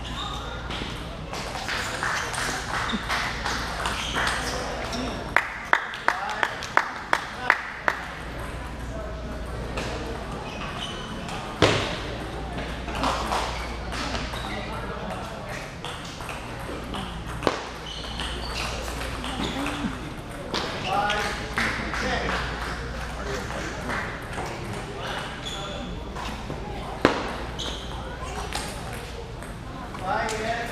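A table tennis ball clicking sharply: about seven quick clicks a third of a second apart a few seconds in, then single clicks spread out later, over a steady murmur of voices in a large hall.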